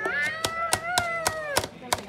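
A toddler's long, high-pitched drawn-out vocal cry that rises slightly and drops off after about a second and a half, over a run of sharp taps, about four or five a second.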